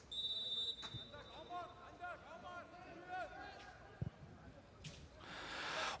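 A referee's whistle blows once, a short steady blast, typical of the kick-off signal for the second half. Faint shouts of players on the pitch follow, with a single dull thud of a ball being kicked about four seconds in.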